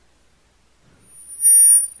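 Microphone feedback through the church PA: a piercing high-pitched squeal of several steady tones that swells up about a second in, holds at full strength briefly, then cuts off.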